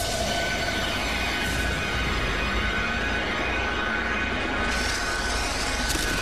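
Soundtrack of a tokusatsu transformation sequence: dark, ominous music over a dense, steady rushing noise.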